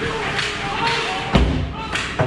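A heavy, low thud about one and a half seconds in as ice hockey players crash against the goal net by the camera, over shouting voices in the rink.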